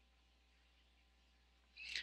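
Near silence: room tone, with a brief faint hiss just before the end.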